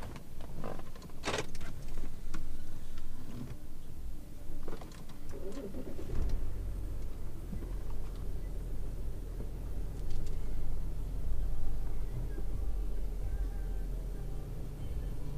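A few clicks and knocks, then about six seconds in the Audi A8 D3's 3.0 TDI V6 diesel engine, with 423,969 km on it, starts and settles into a steady low idle.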